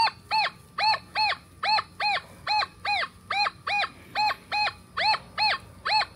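Nokta Triple Score metal detector giving its target tone in Relic mode as the coil is swept over a deep, big piece of buried iron with the iron reject setting turned down to 2. A steady string of short beeps, about two and a half a second, each briefly rising and falling in pitch.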